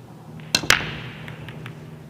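Nine-ball break shot: a sharp crack of the cue tip on the cue ball about half a second in, then a louder smack as the cue ball hits the rack a split second later. A few lighter clicks follow as the scattering balls knock into one another and the cushions.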